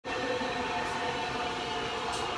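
Red electric commuter train of the Regionalverkehr Bern-Solothurn passing close by: a steady rush of running noise with several steady whining tones over it.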